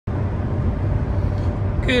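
Steady low road rumble inside the cabin of a 2019 Subaru Crosstrek driving on a highway; a man starts speaking near the end.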